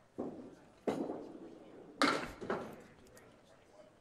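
A candlepin bowling ball thuds onto the lane and rolls, then strikes the candlepins about two seconds in with a sharp clatter that fades away.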